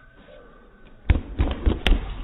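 A person landing hard on a folding foam gym mat after a flip: a cluster of dull thumps starting about a second in, the first the loudest, as the body hits and rolls over on the mat.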